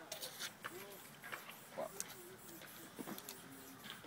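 Quiet stretch of faint voices and a short muttered word, with a few scattered sharp clicks and taps.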